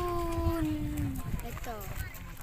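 A long drawn-out shouted call from one voice, held at a steady pitch for about a second and a half and dropping slightly as it ends, followed by brief shorter calls, over a low rumble of wind and surf.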